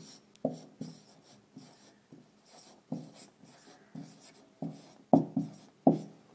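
Marker pen writing on a whiteboard: a string of short separate strokes of handwriting, the loudest few near the end.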